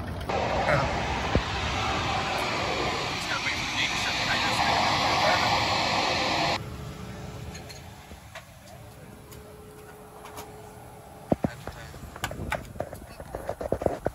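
Loud steady rushing noise of riding in an open golf cart, cut off abruptly about six seconds in. Then the quiet inside of a private jet cabin on the ground, with a faint steady hum for a few seconds and a few clicks near the end.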